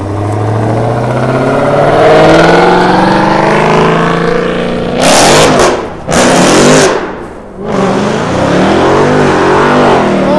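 A Dodge Charger's engine accelerating hard, its pitch climbing steadily over the first few seconds. Loud engine revving follows, with harsh blasts about five to seven seconds in and revs rising and falling near the end.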